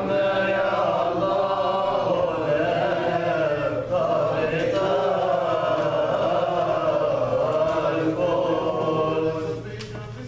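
Coptic Orthodox liturgical chant, sung in long, wavering held notes, fading out just before the end.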